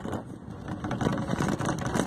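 A bus in motion heard from inside: engine and road noise with frequent rattles and knocks.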